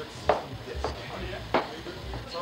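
Three sharp knocks, the loudest about a third of a second in and another about a second and a half in, with dull low thumps between them and voices faintly in the background.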